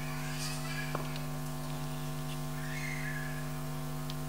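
Steady electrical mains hum, a buzzy stack of fixed tones from the recording or sound-system chain, with a single sharp click about a second in.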